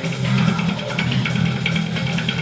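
Death metal: an electric bass played fingerstyle, following a fast, dense riff over distorted guitars and drums.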